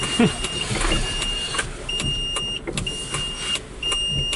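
A warning beeper inside the Jiayuan electric micro car gives a steady high beep about once a second while the car is being parked, over low car noise and a few clicks.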